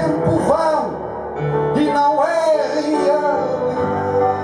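Live jazz quintet playing: sustained piano and bass notes under a melody line that swoops up and down in pitch, with light cymbal shimmer.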